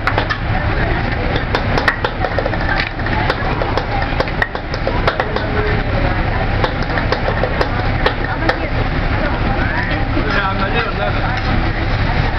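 Metal spatula tapping and scraping on a steel teppanyaki griddle while fried rice is worked, many sharp clinks over a steady din of restaurant chatter and low rumble.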